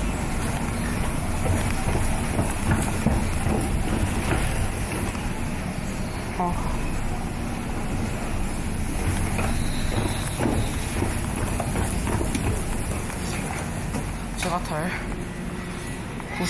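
Steady rumble and hum of a moving escalator, with faint voices in the background.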